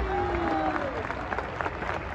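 Audience applauding, with voices calling out over the clapping in the first second.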